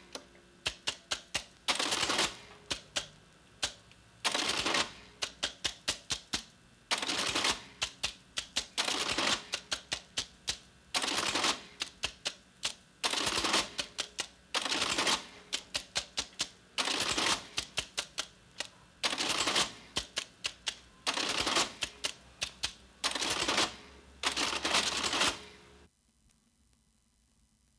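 National Cash Register electric adding machine being worked: a quick run of key clicks, then the short motor-driven cycle of the mechanism. This repeats about every two seconds, a dozen times, and stops suddenly at the end.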